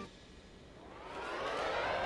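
After a brief near silence, a siren-like tone of several pitches sounding together fades in and rises slowly and steadily in pitch, growing louder.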